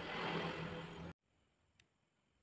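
The rotor of a small homemade one-coil brushless motor spinning on its steel shaft, a whirring hiss with a steady low hum, cut off abruptly about a second in.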